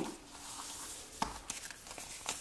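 A folded sheet of origami paper being opened out by hand: faint rustling, with one crisp snap a little over a second in.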